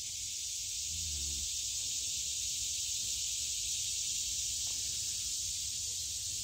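Steady high-pitched drone of an insect chorus in summer woodland, unbroken throughout, with a brief faint low hum about a second in.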